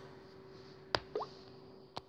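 A quiet mouth click about a second in, followed at once by a short pop that rises quickly in pitch, over a faint steady hum.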